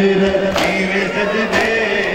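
A male voice chants a noha, a Shia lament, in long held, slowly wavering notes. Sharp slaps of the crowd's chest-beating (matam) cut in about once a second.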